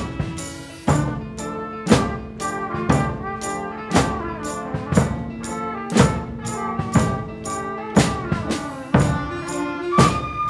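School concert band playing a rock-song arrangement: brass and woodwinds with piano over drum-kit percussion, a heavy drum hit landing about once a second.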